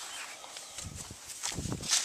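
Rustling and soft handling noises as large squash leaves are pushed aside by hand, with a couple of short low thumps in the second half.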